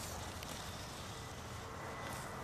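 Steady outdoor background noise, a faint even hiss over a low rumble, with no distinct event.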